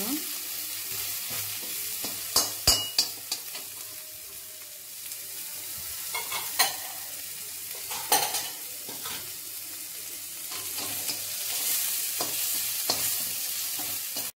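Garlic cloves sizzling as they fry in a steel kadai, stirred with a perforated steel skimmer that scrapes and clinks against the pan. A cluster of sharp clicks comes about two to three and a half seconds in, with single ones around six and a half and eight seconds.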